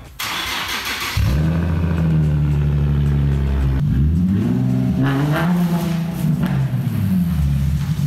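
Nissan 370Z's 3.7-litre V6 is cranked by the starter and catches about a second in. It then runs loud and steady through its single exhaust, with a couple of rises and falls in revs.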